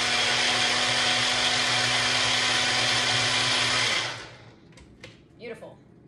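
Small personal blender blending yogurt, chopped apple and cinnamon: a steady motor whir that stops about four seconds in and quickly winds down.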